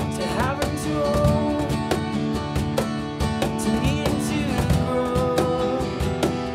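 Acoustic band playing live: two strummed acoustic guitars over a steady beat from a hand-played cajón, with a sung vocal line held above them.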